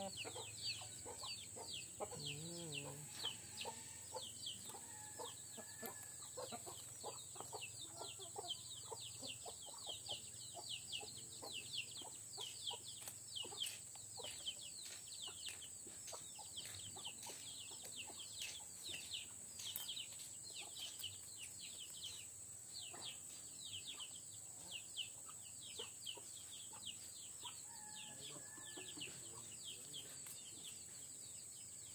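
Farmyard background: a few low clucks from domestic chickens near the start and again near the end, over continuous rapid high-pitched chirping and a steady high drone.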